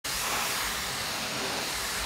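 Pressure washer's water jet hissing steadily as it is sprayed onto terrace decking.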